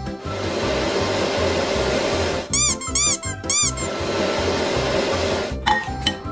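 Canister vacuum cleaner running steadily over background music with a beat, broken by four quick squeaky chirps in the middle; the vacuum's sound cuts off shortly before the end.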